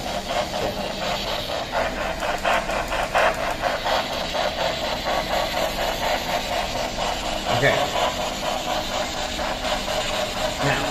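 Handheld spirit box sweeping rapidly through radio stations: continuous choppy static cut into quick short bursts, with brief snatches of broadcast sound.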